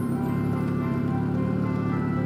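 Background music of steady, held chords.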